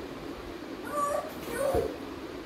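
A toddler's short, high, whiny vocal sounds: one brief cry about a second in and a second, gliding one near the end. A soft thud comes with the second cry as a bolster pillow drops off a plastic chair onto the floor.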